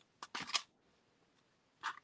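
A few light clicks and taps from handling paper card pieces and a small craft tool on a tabletop: a quick cluster about half a second in, then one more near the end.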